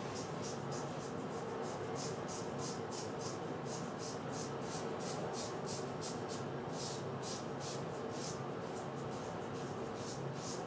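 Gem Jr single-edge safety razor scraping through lathered stubble on the cheek and neck in short, quick strokes, about three or four a second.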